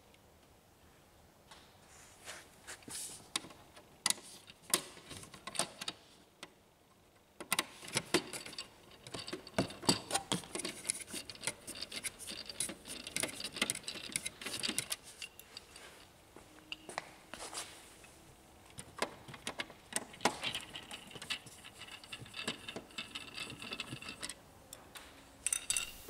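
Hand screwdriver working two small screws out of a laser printer's plastic frame: a long run of small irregular metallic clicks and ticks, with a short pause about six seconds in.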